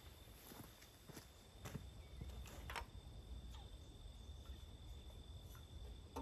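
Near silence with a few faint, scattered footsteps on gravel.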